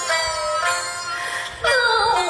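Teochew opera instrumental accompaniment plays held melodic notes. About one and a half seconds in, a woman's sung opera line comes in with a wavering vibrato.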